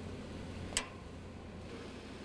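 One short click about three-quarters of a second in, a BOSS snowplow's lock pin lever being flipped to the off position, over a low steady hum.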